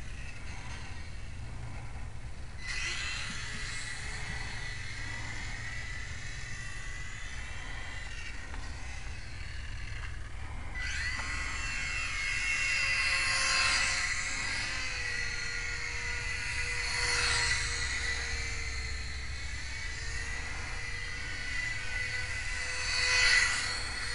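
Whine of a FlyZone PlayMate micro electric RC airplane's motor and propeller, swelling and fading as the plane flies by. It grows a few seconds in, drops briefly near the middle, then comes back louder with its pitch sweeping up and down as the plane makes low, close passes.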